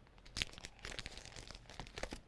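Clear plastic packaging of a precut fabric pack crinkling as it is picked up and moved: a run of irregular crackles starting a moment in, the loudest near the start.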